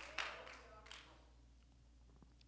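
Near silence in a large, echoing room: a faint brief voice and a couple of light taps in the first second, then only room tone.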